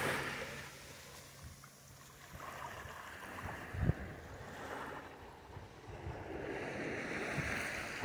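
Small waves washing up a sandy beach and drawing back: the hiss of the wash fades over the first second or two, then quiet lapping builds again toward the end. A single short thump about four seconds in.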